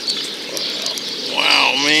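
A man's excited, drawn-out exclamation that rises and falls in pitch, starting a little over a second in and running straight into speech; before it there is only low background.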